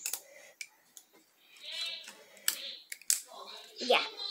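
A few light, sharp clicks and snaps of rubber bands being stretched and slipped onto a cardboard tube by small fingers, with soft voices underneath.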